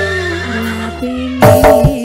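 Live campursari koplo band music: a held, slightly wavering high note over sustained keyboard tones, then the drums come back in with quick hits about a second and a half in.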